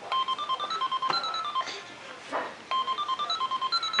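Toy cash register playing a short electronic tune of quick beeping notes that step up and down in pitch, twice: once at the start and again about two and a half seconds later, each lasting about a second and a half.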